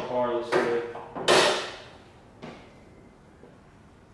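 A loud metallic clunk about a second in as a Subaru WRX STI's steel hood is raised, ringing briefly, then a lighter click as it is propped open.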